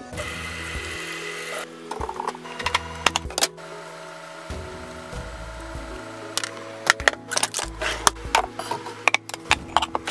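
Background music with held notes over kitchen clatter: clean dishes and glasses clinking and knocking as they are put away in the cupboards, in two bursts.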